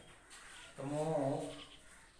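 A man's voice speaking one short, drawn-out syllable about a second in, with low room tone around it.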